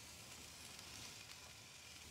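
Faint, steady sizzling of thick New York strip steaks searing on a grill grate over a hot fire.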